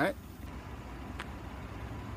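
Low, steady outdoor rumble, with a single brief click about a second in.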